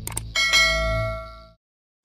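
Two quick click sounds, then a bright bell ding that rings and fades over about a second: a notification-bell sound effect for a subscribe button. A low music bed runs underneath and cuts off about halfway through.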